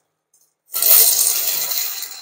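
Beaten egg sizzling in hot olive oil in a non-stick frying pan as a spatula lifts the setting omelette and raw egg runs onto the hot pan. The sizzle starts suddenly about two-thirds of a second in and slowly fades.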